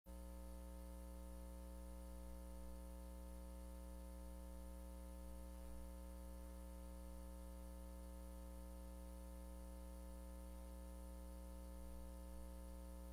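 Faint, steady electrical hum with a stack of even overtones over a light hiss, unchanging throughout.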